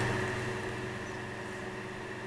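Steady low electrical hum with a faint even hiss: room tone between spoken phrases.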